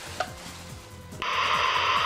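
Faint background music, then about a second in a sudden burst of TV-static hiss cuts in and holds, louder than the music: a video-interference transition effect.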